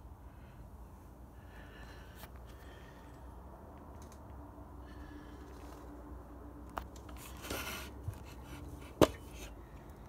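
A low steady hum with faint handling noises: a few light clicks, a brief rustle, and one sharp knock near the end.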